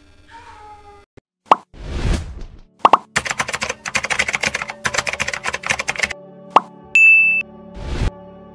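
Outro sound effects: a couple of pops and a whoosh, then about three seconds of rapid keyboard-typing clicks as a search bar is typed in, a single click, and a short, loud, high beep about seven seconds in, over a soft background music bed.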